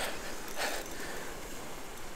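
Waves washing against jetty rocks with wind on the microphone, and two short breathy exhalations from the angler, one at the start and one about half a second in, as he fights a hooked fish.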